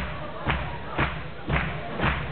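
Stage percussion from a live concert: a steady beat of thuds with a sharp top, evenly spaced at about two a second, heard through the hall's sound system as a song's intro beat.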